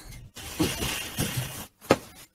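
Rustling and shuffling noise of someone moving about at a desk and office chair, with a short, louder sound near the end.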